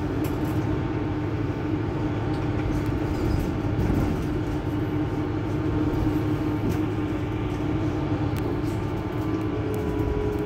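Mercedes-Benz Citaro C2 hybrid city bus standing stationary at a stop with its engine idling: a steady, even hum with a low rumble, and a slightly higher tone joining in near the end.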